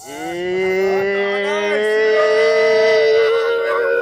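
Men's voices holding one long, loud note: a single pitch that rises at the start and then holds for about four seconds, with a lower voice under it for the first half and shorter sliding voices over it.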